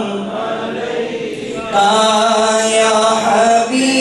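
A man chanting devotional verse in a slow melodic recitation into a microphone, holding long notes. It is softer for the first second and a half, then louder.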